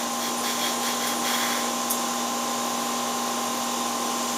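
A steady machine drone: an even whir with a few constant hum tones, running without change.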